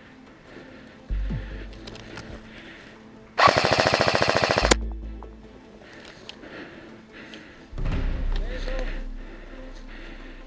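Airsoft electric rifle firing one rapid full-auto burst lasting just over a second, a fast, even string of shots that cuts off sharply.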